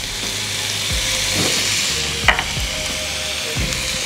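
Chicken, vegetable and bean filling sizzling in an oiled cast-iron skillet over a gas burner, a steady frying hiss. A brief tap a little past two seconds in.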